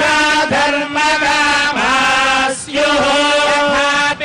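A Hindu priest chanting mantras over a microphone: one male voice holding steady, level notes in long phrases, with a brief break for breath about two and a half seconds in.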